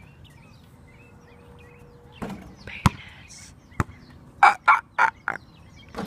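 A basketball bouncing twice on asphalt, about a second apart, then a rapid run of five short, loud vocal cries.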